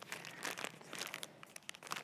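Quiet, irregular crinkling of a plastic wrapper being handled, a packaged water filter turned over in the hands.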